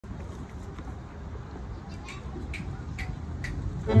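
Quiet outdoor background with a low rumble, a few faint clicks in the second half and a low voice, just before the ensemble starts playing at the very end.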